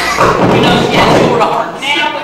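A single thud right at the start, followed by voices.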